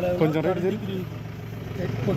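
Men's voices talking in an outdoor confrontation over the steady low hum of an idling vehicle engine.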